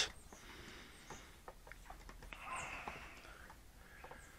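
Faint clicks and rubbing from the control sticks and plastic case of a Cheerson CX20 radio transmitter as the sticks are swept corner to corner during stick calibration, with a soft rustle about two and a half seconds in.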